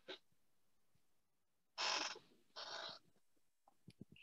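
A person's two short breathy sounds, about half a second apart, in the middle of a quiet pause, heard over a video-call line.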